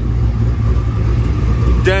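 A Camaro 2SS's 6.2-litre V8 idling with a steady, even low rumble.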